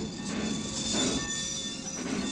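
Steam locomotive with its train standing at a halt, with thin, high metallic squealing tones over a rumbling noise.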